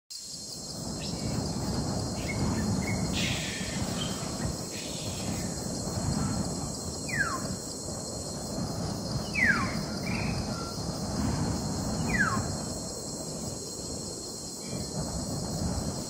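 Jungle nature ambience: a low rumble that swells and fades under a steady high hiss, with three falling whistled bird calls a couple of seconds apart and a few short chirps before them.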